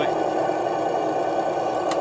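Electronic RC sound unit playing a simulated engine sound through a small speaker inside a scale model generator, running steadily at a constant level. A single click near the end as a small hinged plastic door is shut.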